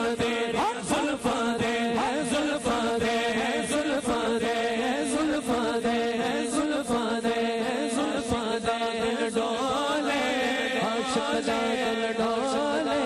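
Man singing devotional verse into a microphone over a steady chanted drone held by a group of men, with a run of sharp beats.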